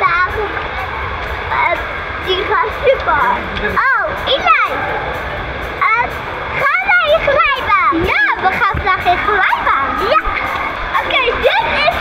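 Indoor water-park din: a steady wash of splashing water with children's excited voices rising and falling over it, and background music.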